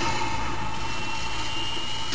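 Beatless break in an electronic dance music soundtrack: a steady whooshing synth wash with a faint high held tone, before the beat and a spoken 'system activated' sample return.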